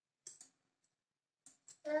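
A few light, sharp clicks as small pooja items are handled: a pair a little way in and two more near the end. Right at the end a small child's voice starts to sing.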